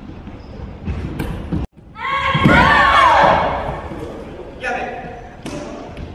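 Thuds of bare feet on a wooden gym floor about a second in, then a loud drawn-out karate shout (kiai) falling in pitch, with further thuds and a shorter shout near the end.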